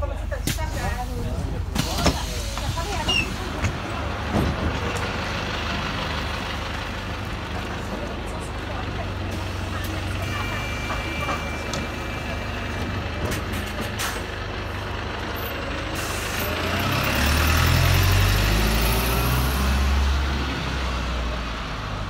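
Engine of a red double-decker bus running steadily, with a few knocks in the first seconds and a steady high tone lasting about two seconds near the middle. The engine grows louder in the last few seconds as the bus pulls away from the stop.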